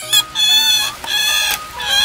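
Large wild rats squealing in a woven bamboo cage: a run of shrill, drawn-out squeals, three or four in a row with short gaps between them.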